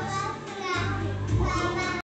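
Music playing from the television with a strong low bass line that swells about a second in, and children's voices over it.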